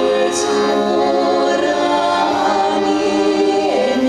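Female vocal ensemble of five singers performing a song in harmony, holding long sustained notes.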